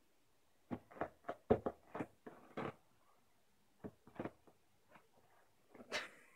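Short, faint rustles and taps from a baby handling a paper tissue box and pulling out tissues: a quick irregular run in the first three seconds, then a few scattered ones.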